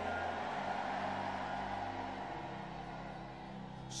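Soft background music of sustained keyboard chords, the held notes shifting about two and a half seconds in, over a faint steady hiss.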